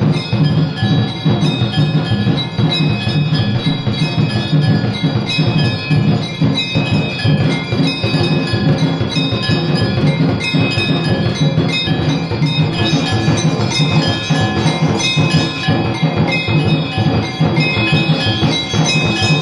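Temple aarti bells and drums beaten in a fast, unbroken clangour, the bells ringing on over the dense drumming.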